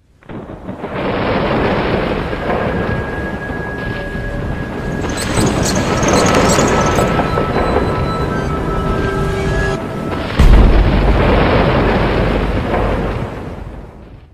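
Cinematic end-screen sound effect: a dense, thunder-like rumbling noise that swells in, with a deep boom hitting about ten and a half seconds in, then fading out at the end.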